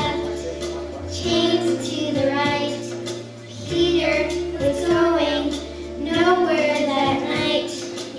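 Children's choir singing a song together over instrumental accompaniment with long held bass notes.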